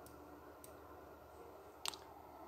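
Computer mouse button clicks: a faint one just past half a second and a sharper, louder one near the end, against quiet room tone.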